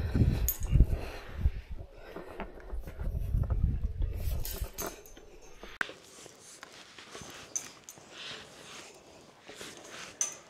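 Footsteps going down steel stairs, a mesh walkway and a checker-plate ladder, with scattered clicks and knocks of shoes on metal. A low rumble stops suddenly about six seconds in, leaving quieter, sparser steps.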